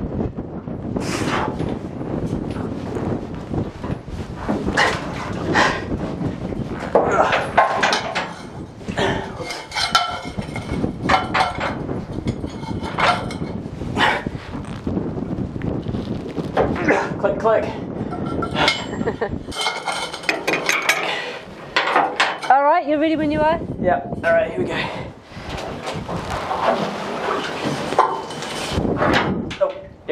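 Metal clinks and knocks of a socket on a long steel bar being worked against a tight bolt.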